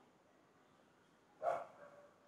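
A single short dog bark about one and a half seconds in.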